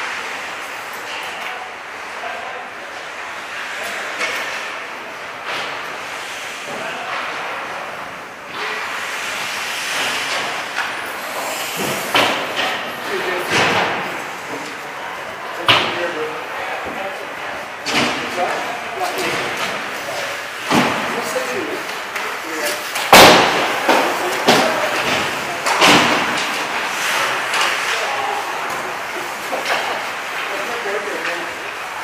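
Ice hockey practice in an echoing rink: skates scraping the ice, sticks and pucks clacking, and voices calling out. From about ten seconds in there are many sharp knocks. The loudest is a hard bang a little after twenty-three seconds.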